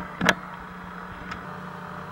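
Two sharp clicks about a quarter second apart near the start, then a steady low hum with one faint tick a little over a second in.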